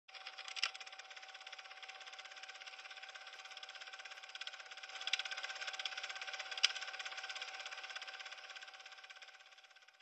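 Faint film projector running: a steady whine over a fast, fine mechanical ticking, with a few sharper clicks near the start and around five and six and a half seconds in, fading out just before the end.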